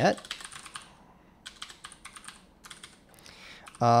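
Typing on a computer keyboard: runs of quick keystrokes with a short pause about a second in.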